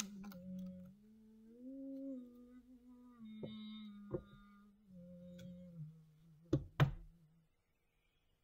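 A person humming a slow, wordless tune in long held notes. Several sharp knocks of tarot card decks and a card box being handled on the table break in, the two loudest close together near the end.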